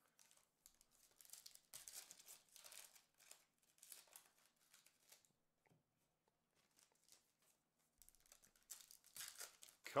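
Faint crinkling and tearing of baseball card pack wrappers as packs are torn open and the cards slid out, in scattered bursts with a quiet stretch of a couple of seconds in the middle.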